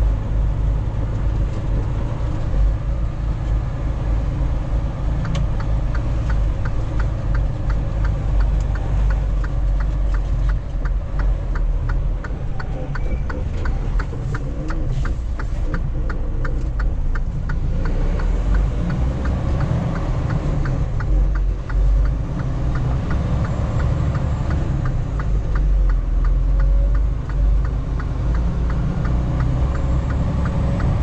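Semi truck's engine and road noise heard inside the cab while driving, a steady low rumble. A fast, regular ticking runs through much of the middle.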